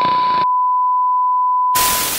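Steady, unbroken test-tone beep of the kind played with TV colour bars. A short burst of static hiss comes at the start and another near the end.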